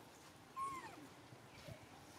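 A monkey gives one short call about half a second in, rising then falling in pitch, over a faint background.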